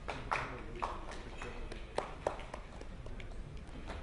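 A few people clapping sparsely and irregularly, the loudest claps about two seconds in, over the low hum of a conference hall.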